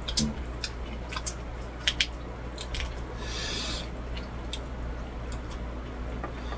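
Table eating sounds: scattered sharp clicks of chopsticks and chewing, with a short hissing noise a little past three seconds in, over a low steady hum.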